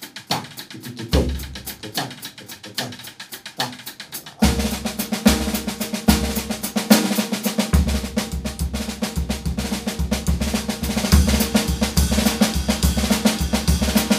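Drum kit played with sticks: light, regular strokes at first, then about four seconds in the full kit comes in louder and busier, with bass drum and snare driving a steady groove.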